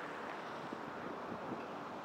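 Faint, steady outdoor background noise: an even hiss with no distinct sound standing out.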